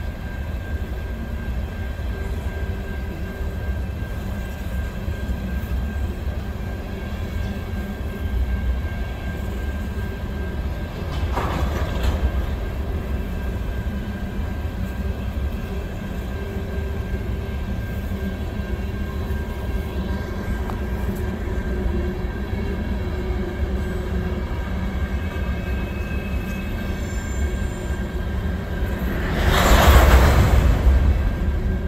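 Empty covered hopper cars of a freight train rolling slowly past, a steady low rumble of wheels on rail. A brief louder burst of noise comes about eleven seconds in, and a louder one near the end.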